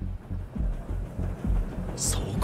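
Music from the anime's battle soundtrack, with low rumbling pulses about twice a second.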